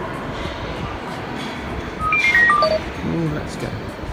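Electronic chime, a quick falling run of about six short beeps about two seconds in, over the murmur of a terminal hall; it fits an airport public-address chime.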